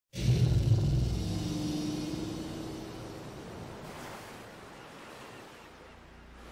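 A deep rumbling boom that starts suddenly and fades slowly over several seconds, with a soft whoosh about four seconds in.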